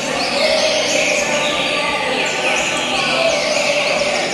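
Several caged coleiros (double-collared seedeaters) singing at once in a tournament hall: an unbroken chorus of quick, high, downward-sweeping song phrases that overlap one another.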